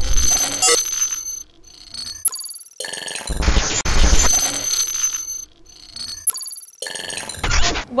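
Glitchy electronic sound effects of a TV show's title sting: stuttering bursts of digital noise with high, ringing electronic tones, cutting in and out abruptly several times.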